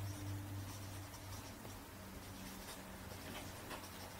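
Felt-tip marker writing on flip-chart paper: a few faint, short scratching strokes, over a low steady hum.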